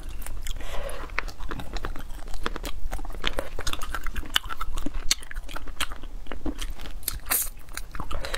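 Close-miked chewing and biting of braised spicy chicken feet, a dense run of short crisp clicks and crunches of skin and cartilage.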